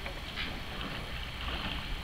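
Double scull rowing on flat water: a steady rush of water and a low rumble, with a few faint knocks.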